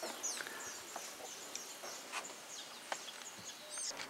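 Small birds chirping faintly in the open air, many short high notes sliding downward, over a steady outdoor hiss with a few soft clicks.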